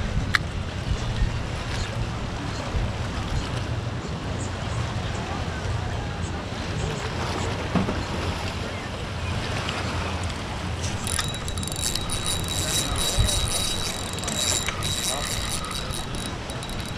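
Wind buffeting the microphone over sea water, with a low steady hum in the first few seconds. From about eleven seconds in, a spinning reel is cranked: a steady high whir with fast clicking, as a hooked fish is reeled in.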